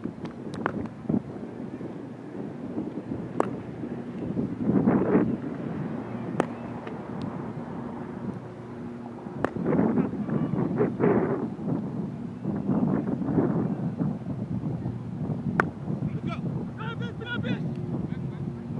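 Wind buffeting the microphone, with distant players' voices calling across a cricket field and a few sharp knocks. Voices rise into higher-pitched calling near the end.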